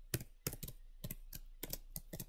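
Typing on a computer keyboard: a quick, uneven run of keystrokes, about nine in two seconds.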